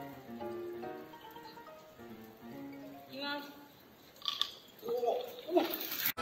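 Soft background music, then near the end a bottle of Coca-Cola erupts into a foam geyser as Mentos drop into it. There is a short rush of spraying foam and raised voices.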